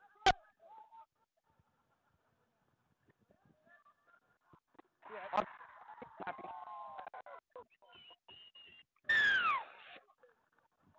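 Rugby league players shouting on the field: a sharp knock just after the start, a stretch of overlapping shouts in the middle, and a loud call falling in pitch near the end.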